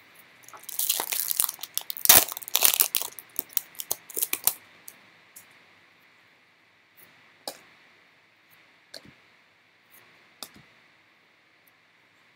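Foil trading-card pack wrapper being torn open and crinkled for a few seconds, followed by a few soft scattered clicks of cards being handled.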